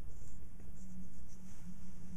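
Faint scratching and rubbing as fingers handle a small block of laminated material, over a steady low hum.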